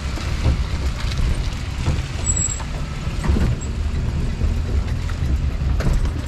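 Vehicle driving slowly over a rough dirt track: a steady low rumble with scattered knocks and rattles from the bumpy ride.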